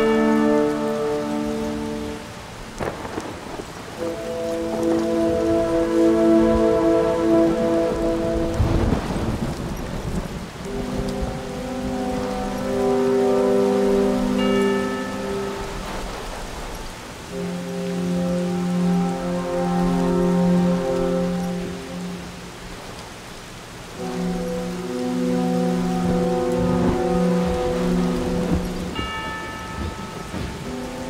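Steady rain falling on a boat's deck and rigging, with a low rumble of thunder swelling about nine seconds in. Slow musical chords, held a few seconds each and changing, sound over the rain.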